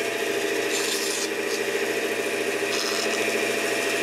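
Bandsaw running with a steady hum while its blade cuts through a piece of wood, the cutting hiss getting brighter about a second in and again near three seconds.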